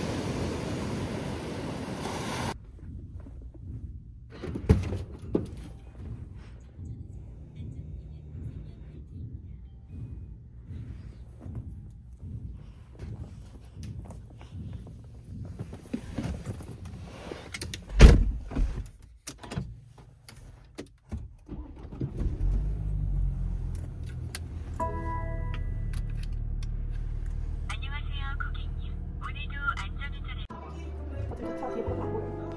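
Small waves washing up on a sandy beach for the first couple of seconds, then inside a car: rustling and handling, one sharp knock, and from about two-thirds of the way in the car's engine running steadily, with steady tones over it near the end.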